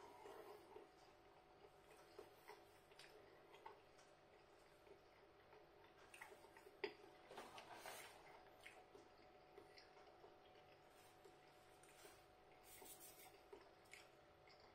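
Near silence with faint mouth sounds of chewing a bite of pizza, and scattered light clicks and knocks. A louder cluster of handling sounds comes about halfway through as the cardboard pizza box is picked up, with a single sharper knock.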